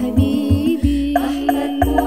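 A sholawat devotional song in Al-Banjari style: a woman's voice sings a melismatic line, holding one long note through the second half, over frame drums beating a rhythm with deep bass strokes.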